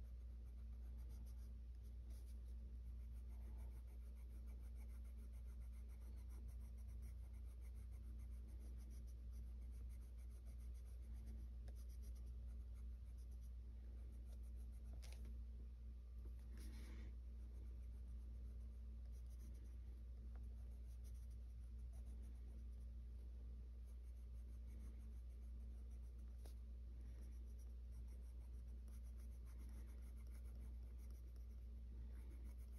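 Faint scratching of a colored pencil shading on paper, over a steady low hum, with two brief louder noises around the middle as the hand leaves the page.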